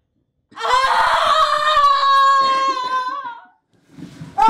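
A person's loud, long wail on one held note, sliding slightly down and breaking off near the end.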